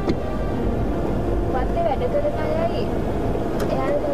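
Steady engine and road noise heard inside a moving van's cabin, with a sharp click near the end.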